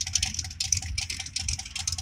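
Rapid, even ticking, about seven ticks a second, over a low rumble.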